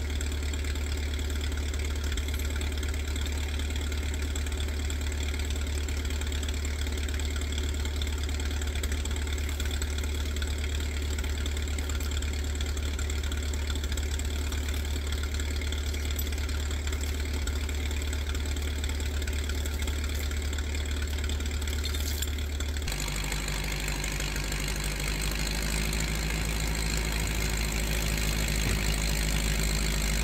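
John Deere 440-A log skidder's diesel engine idling steadily while it waits to drag logs on its chokers. About three-quarters of the way through, the engine note shifts and grows brighter and a little louder.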